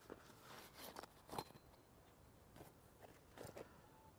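Near silence, broken by a few faint clicks and knocks of small camping gear being handled, the clearest about a second and a half in and a small cluster near the end.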